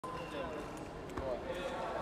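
Faint background voices with a few dull thuds.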